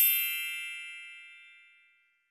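A bright chime sound effect: one bell-like ding that rings out with several high tones and fades away over about two seconds.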